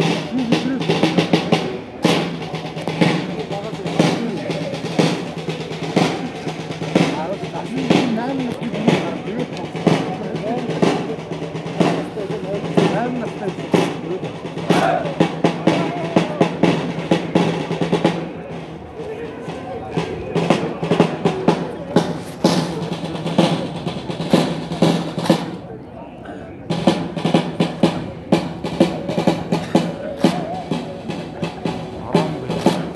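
Drums, snare and bass drum, beating a steady cadence of about one stroke a second for an honor guard's drill display, with crowd voices chattering close by.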